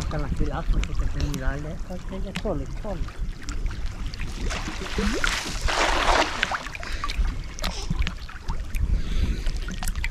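Water sloshing against a microphone held at the surface, with about five seconds in a brief rushing splash as a cast net is thrown and lands on the water.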